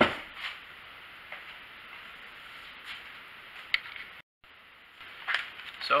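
A sharp knock at the start as a part is set down, then low room tone with a few faint clicks of handling. The sound drops out briefly just after four seconds in, and near the end a plastic parts bag crinkles.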